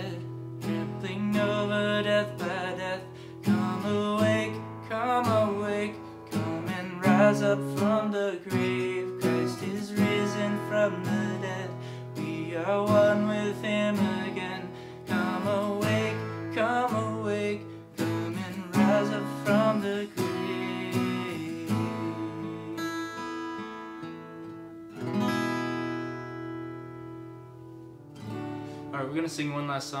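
A man sings while strumming a steel-string acoustic guitar. Near the end the singing stops and a last strummed chord rings out and fades.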